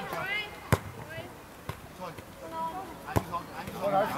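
Two sharp thuds of a football being kicked, the first just under a second in and the second about three seconds in, with shouts and calls from players and the touchline.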